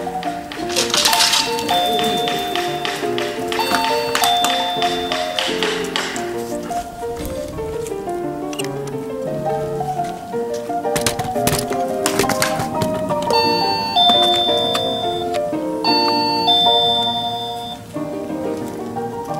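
Background music with a two-note electronic ding-dong chime sounding four times, twice early and twice near the end, each a short high note falling to a longer lower one: the alarm mat's doorbell-style signal, set off when the dog steps onto the contact zone.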